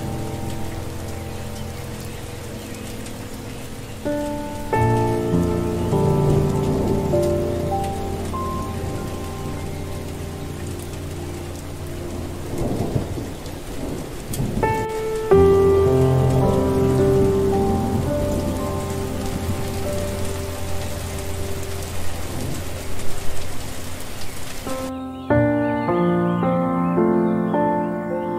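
Steady rain with thunder rumbling in the middle, mixed under soft meditation music of held notes. The rain stops suddenly near the end and the music carries on alone.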